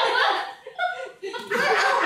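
Laughter and chuckling from more than one person, dropping away for about a second in the middle before picking up again.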